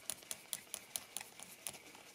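Metal threaded insert nut being spun by hand clockwise along a threaded steel rod, giving a run of light, even ticks about four to five a second as it turns freely, not yet bearing against the wood.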